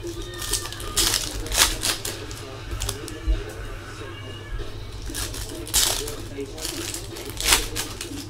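Glossy Topps Chrome baseball cards being flipped through by hand, with about half a dozen sharp, irregularly spaced flicks as cards are slid off the stack.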